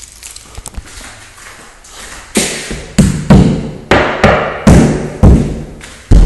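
Knuckles knocking repeatedly on an interior wall, roughly two knocks a second, starting a couple of seconds in, to test whether it is hollow. The wall sounds hollow.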